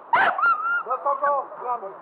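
A group of people talking over one another, with a sudden sharp call just after the start that trails into a short held tone.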